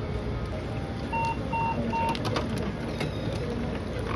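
7-Eleven self-serve coffee machine running as it pours iced coffee, then three short, evenly spaced beeps about a second in, signalling the pour is finished. A few sharp clicks follow.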